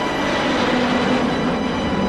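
Jet airliner taking off: a loud, steady rush of engine noise that swells in at the start, heard under sustained background music.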